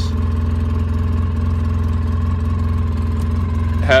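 2008 Polaris RZR 800's factory-rebuilt twin-cylinder four-stroke engine idling steadily, an even low drone with no changes in speed.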